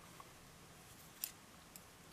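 Near silence, with a few faint clicks of knitting needles being handled, the clearest a little after a second in.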